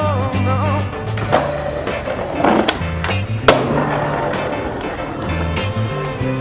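Skateboard on a metal stair handrail: a scraping pop and grind about two and a half seconds in, then a sharp clack of the board landing about a second later, over background music.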